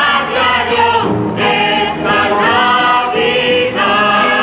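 Music: a musical-theatre chorus of several voices singing a show tune, held notes changing every half second or so.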